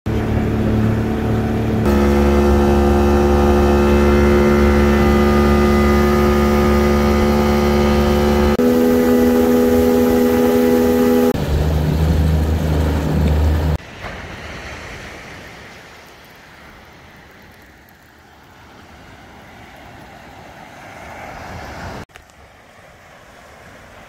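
A boat's motor running at a steady speed, its hum holding one pitch within each clip and shifting at the edits. About fourteen seconds in it gives way to a much softer, steady rushing noise.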